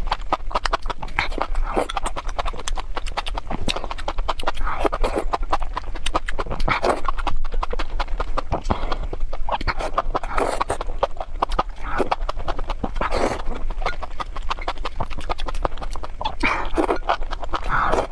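Close-miked eating: wet chewing and lip-smacking clicks, with a slurp every couple of seconds as chili-oil-coated enoki mushroom strands are sucked up from chopsticks.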